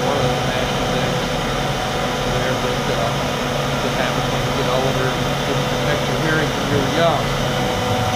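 CNC router spindle cutting a plaque on its cleanup pass while a dust collector runs, a steady whine over a loud rush of air. The pitch holds, with faint small changes as the cutter moves along the outline.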